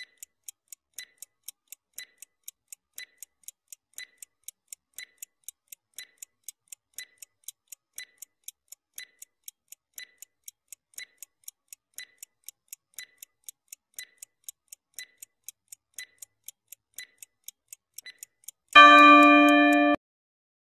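Countdown-timer sound effect: a clock ticking evenly about twice a second. Near the end a loud ringing tone sounds for about a second and a half as the timer runs out.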